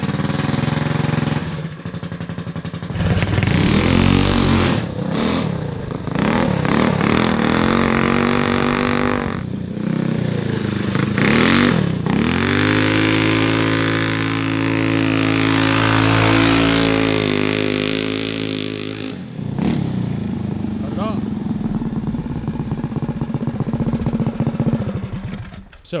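Hot-rodded single-cylinder four-stroke go-kart engine (billet flywheel and rod, 265 hot cam) revving up and down several times, then held at high revs for several seconds under load. It drops off sharply about two-thirds of the way in and runs lower to the end.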